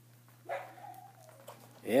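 A young Jack Russell terrier puppy, nursing, gives one short, high whine lasting under a second, about half a second in.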